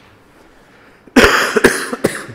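A man coughing: about three loud coughs in quick succession, starting about a second in.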